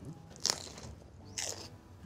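A bite into a small raw hot pepper, crisp and crunchy about half a second in, with a second crunch about a second later.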